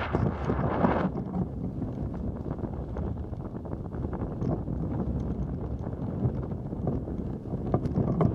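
Wind buffeting the microphone of a pole-mounted camera: a steady rumble with scattered small clicks and knocks. It is stronger in the first second and again near the end.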